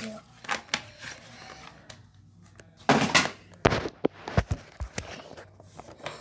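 Handling noise from the recording device as it is picked up, moved and propped in place: scattered clicks and knocks, a louder rustle about three seconds in, then several dull thumps.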